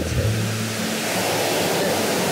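Sea surf washing over a pebble beach: a steady hiss of water over stones.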